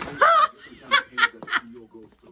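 A person laughing: a short voiced sound, then three quick bursts of laughter.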